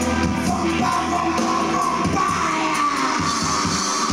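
Live dub band playing, its horn section of saxophones and brass sounding held notes over heavy bass and drums.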